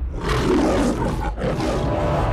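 The MGM logo lion roaring, two roars in quick succession over a low rumble.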